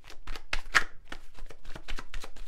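A deck of cards being shuffled by hand: a quick run of soft card clicks and slaps, loudest a little under a second in.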